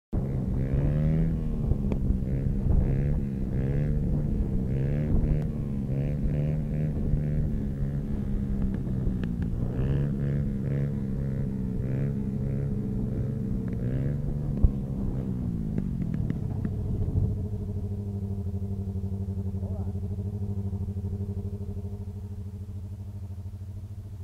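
Mini motorcycle's small engine revving up and down under the throttle, with one sharp knock about two-thirds of the way through. It then settles into a steady, lower and quieter running note.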